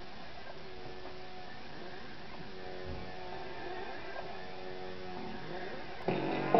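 A faint steady hum with a few faint held tones.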